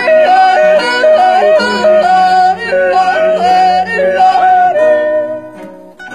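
Yodeling: a loud voice flipping quickly back and forth between notes, dying away near the end.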